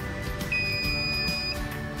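The ASD self-watering pump gives one steady, high electronic beep about a second long, starting half a second in, over background music. It is the out-of-water alarm: the outer water bottle has been pumped empty into the inner tank.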